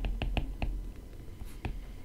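Stylus tips tapping and clicking on a tablet screen during handwriting: a quick run of sharp clicks in the first half-second or so, then a single click near the end.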